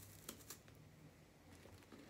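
Near silence: room tone with a faint low hum and a few faint short clicks in the first half-second.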